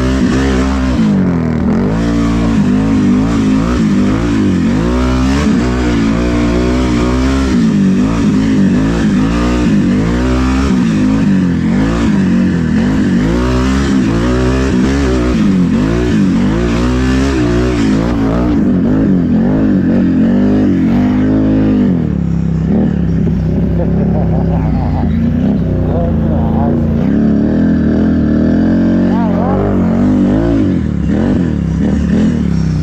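ATV engine being ridden hard, its pitch climbing and dropping over and over as the throttle is worked. After about twenty seconds it settles into a lower, steadier run.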